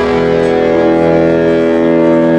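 Live band music: a chord held and ringing, with no strums or drum hits during it.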